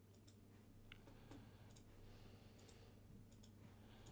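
Near silence: room tone with a low hum and several faint clicks of a computer mouse.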